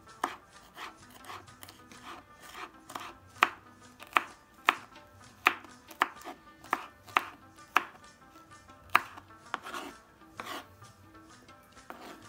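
Kitchen knife chopping green chillies on a wooden cutting board: sharp knocks of the blade against the board, about two a second and unevenly spaced.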